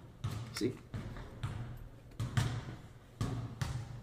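About six dull knocks at uneven intervals over a few seconds, with a man saying "See?" near the start.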